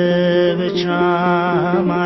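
Ethiopian Orthodox mezmur sung as a chant: a voice holds a long note that wavers in pitch near the end, over sustained instrumental accompaniment.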